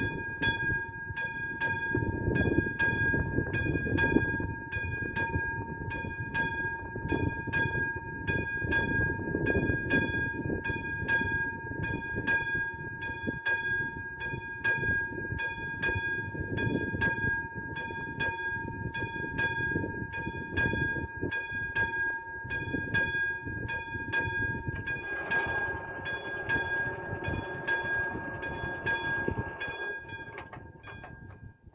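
Railway level crossing warning bell striking steadily about twice a second, with a sustained ringing tone, warning that a train is approaching. About 25 seconds in, a whirring noise joins as the barrier booms come down.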